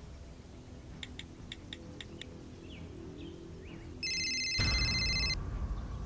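A phone's electronic ring tone, one steady buzzy tone lasting just over a second, starting about four seconds in over a low dramatic music swell that comes in half a second later. Before it, a few faint short chirps over a quiet low background.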